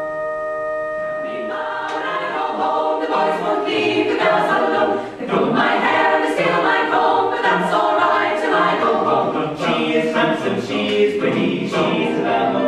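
Mixed choir singing a cappella, many voices together, coming in about a second and a half in after a steady held chord.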